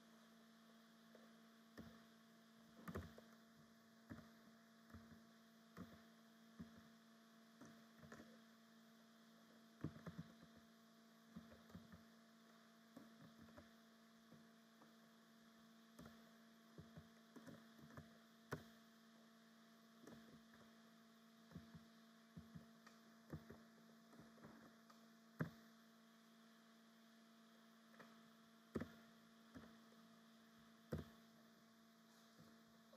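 Faint, irregular clicks of a computer keyboard being typed on, over a steady low electrical hum.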